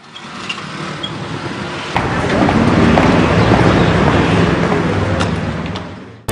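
Street noise with a motor vehicle running close by, growing louder about two seconds in and fading away near the end, with a few faint clicks.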